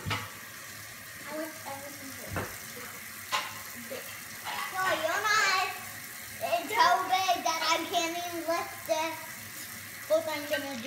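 A small child's high, sing-song voice in two wavering stretches, about four and a half and six and a half seconds in, without clear words. A couple of light knocks come earlier.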